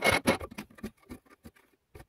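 Plastic spare-tyre hold-down knob being screwed down by hand: a rapid run of plastic clicks and rattles that thins out after about half a second into scattered ticks.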